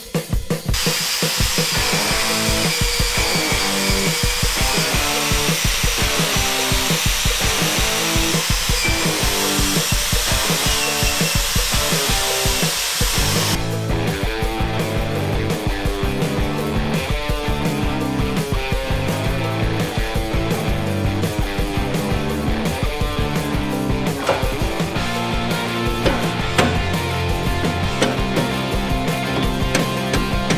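A power-tool wire wheel scrubbing rust off a truck steering spindle, a steady high-pitched whine with harsh scratching, over rock background music. The tool stops about 13 seconds in and the music carries on alone.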